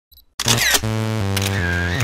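A camera shutter click sound effect about half a second in, over a few sustained electronic music notes that change pitch twice.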